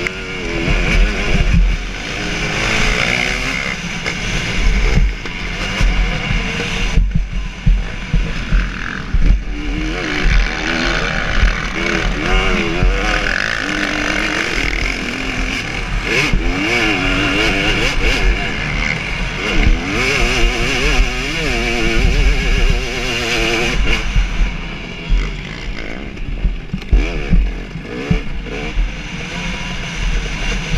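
2017 KTM 250 SX two-stroke motocross engine running hard under race throttle, its pitch rising and falling over and over as the throttle opens and closes and it shifts through the gears.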